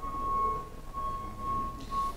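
A steady high-pitched tone holding one pitch, swelling and fading slightly, over faint background hum.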